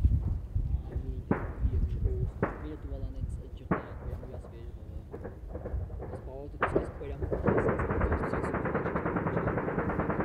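Four single gunshots, the first three about a second apart and the last after a longer pause, with low voices underneath. A continuous dense rattling sets in for the last couple of seconds.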